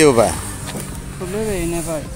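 A man's voice in short fragments: a word ending right at the start and a brief voiced sound a little past the middle, over faint road traffic noise.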